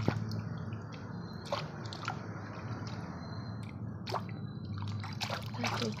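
A hand swishing and scrubbing a small plastic toy in a bucket of water: steady sloshing broken by small splashes and drips.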